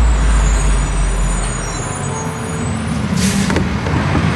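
Garbage truck engine running with a loud deep rumble for the first two seconds, then settling to a lower, steadier hum. A short hiss of the air brakes comes about three seconds in.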